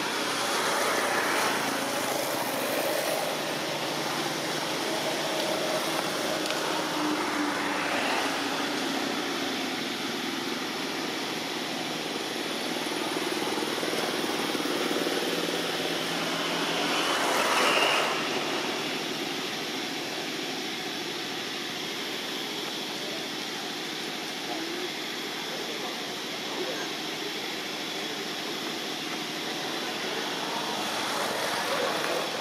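Steady outdoor background noise with faint, indistinct voices; the noise swells to a peak a little past halfway and then falls back.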